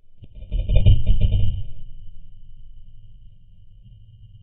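A single shot from a scoped air rifle at a small bird in a tree: a sharp crack just after the start, then a louder low thump and rustle that fades over about a second and a half. A thin steady high tone carries on underneath.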